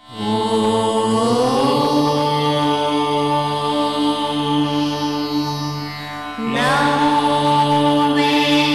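Devotional chant music: long, held chanted notes over a steady drone. It dips about six seconds in, and a fresh held chord comes in.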